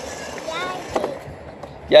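Battery-powered children's ride-on scooter rolling over brick paving, its small motor and plastic wheels making a steady noise that fades out about a second and a half in as it comes to a stop.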